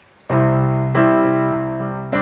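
Electronic keyboard playing the opening chords of a song: a held chord starts about a third of a second in, and a second chord is struck about a second in and held.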